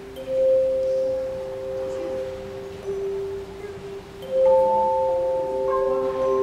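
A children's handchime choir playing the closing hymn: single struck notes ring on with a long, clean sustain and overlap one another. A new, louder pair of higher notes comes in about four seconds in.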